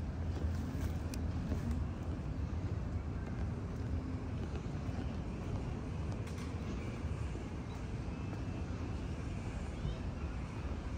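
Outdoor city ambience: a steady low rumble of distant road traffic, with a few faint ticks.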